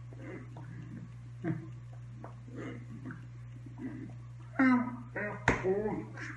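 Faint taps and rustles of hands moving, then near the end two short, loud, wordless voice sounds with falling pitch, a sharp hand slap, and another short voice sound.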